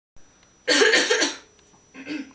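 A woman coughing: a short, loud run of coughs lasting under a second, starting about two-thirds of a second in.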